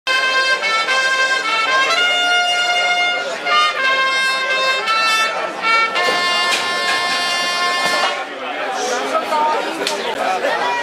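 A brass band led by trumpets plays a tune in long held notes, stopping about eight seconds in, after which the crowd's chatter is heard.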